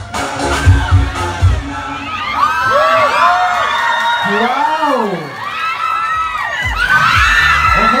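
Dance music with a heavy bass beat cuts off about a second and a half in. A crowd then screams and cheers, with many high shrieks rising and falling.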